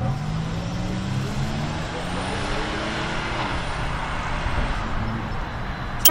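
A car's engine accelerating away, its pitch climbing steadily for about three seconds and then falling back, over steady road and traffic noise.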